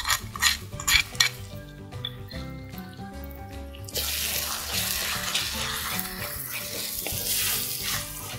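A spoon clicks and scrapes against a small clay bowl as paste is tipped into a clay pot. About four seconds in, a loud steady sizzle sets in as an onion-tomato masala is stirred and fried with a wooden spatula. Background music plays throughout.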